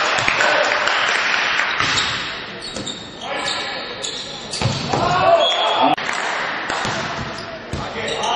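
Indoor volleyball rally: sharp hits of the ball being played, with voices shouting in a large sports hall.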